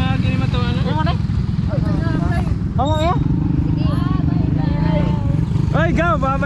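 Small motorcycle engine running steadily, heard from on board, with people's voices talking and calling over it.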